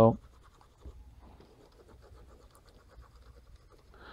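Faint scratching of a Wacom Intuos3 pen nib dragged over the tablet's drawing surface in short strokes.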